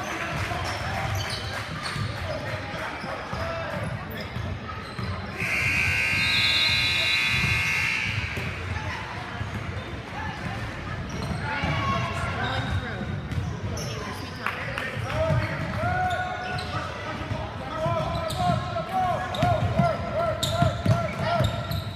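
Basketball being dribbled on a hardwood gym floor amid players' and onlookers' voices, with the echo of a large hall. A loud, shrill steady tone sounds for about two and a half seconds about five seconds in. Short squeaks follow repeatedly in the last few seconds.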